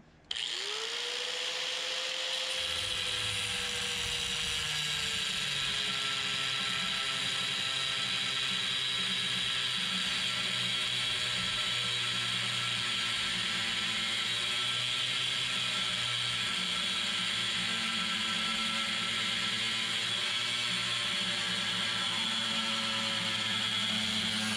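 Handheld angle grinder with a cutoff wheel spinning up, then cutting steadily through a metal bar: a high grinding hiss over the motor's whine. The whine rises as the wheel spins up, then sags a little as the wheel bites into the metal.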